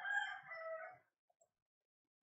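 A single long animal call, falling slightly in pitch partway through and ending about a second in.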